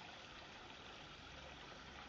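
Near silence: a faint, steady background hiss with nothing distinct in it.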